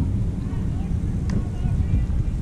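Wind buffeting the microphone as an uneven low rumble, with faint voices in the background and a single short click a little after a second in.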